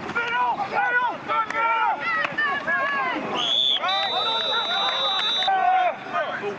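Several men shouting while a referee's whistle blows: a short blast a little past three seconds in, then a long steady blast of about a second and a half.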